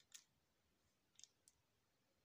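Faint clicks of remote control buttons being pressed: one click just after the start, then a quick pair and another click a little after a second in.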